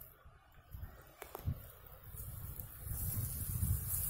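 Rustling in dry grass, with a couple of faint clicks about a second in, then a low rumble of wind on the phone microphone that swells from about halfway.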